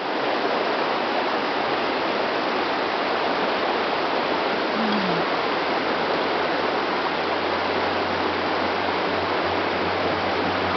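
Water of a shallow rocky stream rushing over stones, a steady, even rushing noise.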